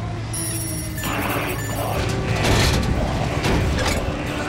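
Electronic interface chirps and beeps from the robot control console, then the servos and hydraulics of the large bipedal MOOSE combat robot powering up, with whirring and several heavy metallic clanks, over a steady low hum.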